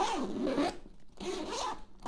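The fabric bag's coil zipper being pulled along the main compartment in two strokes, with a short pause between. It runs smoothly: Peak Design's own zippers, which are described as buttery smooth.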